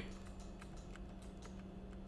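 Faint room tone with a steady low hum and a few faint scattered clicks.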